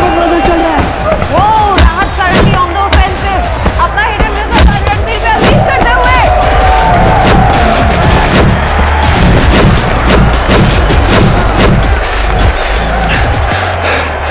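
Backing music with a steady bass under a shouting, cheering crowd, with repeated sharp thuds of boxing punches.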